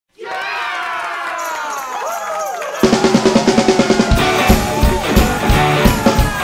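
Rock song intro. For the first three seconds there are gliding, bending tones, then drums and bass come in a little before three seconds, with the full drum kit and cymbals joining about four seconds in.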